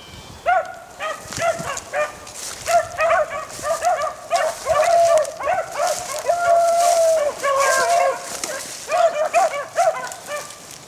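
A pack of beagles baying on a rabbit's trail: several overlapping dog voices in short, repeated bawls, with a longer drawn-out howl in the middle.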